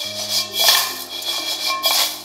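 Dry raw rice grains and whole spices swishing and rattling in a wok as the pan is tossed during dry-toasting, in a swell about half a second in and a shorter one near the end. Soft background music with sustained notes plays throughout.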